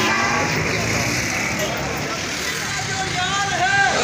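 Crowd noise of a marching street protest: a steady din of many people and street traffic, with voices calling out loudly in the last second or so.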